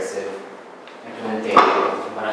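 Speech, with one sharp knock about one and a half seconds in.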